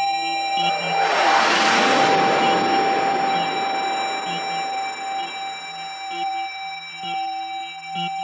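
Minimal techno with no beat: a steady held synth tone and a short repeating low synth figure. About a second in, a noise sweep swells up and fades away over the next few seconds.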